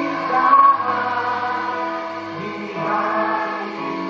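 A live church worship band plays a slow gospel song. Voices sing over sustained keyboard chords, with a louder accent about half a second in.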